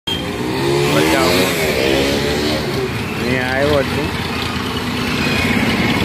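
Street traffic: engines of passing motorbikes, scooters and an auto-rickshaw running, with a person talking twice over the engine noise.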